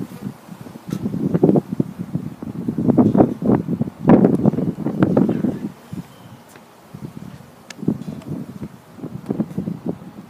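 Wind buffeting the microphone in uneven gusts that come and go, strongest around the middle.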